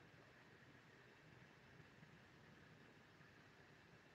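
Near silence: a faint, steady background hiss with no distinct events.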